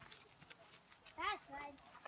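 Faint voices, with one short vocal exclamation that rises and falls in pitch a little over a second in. No gunshot is heard.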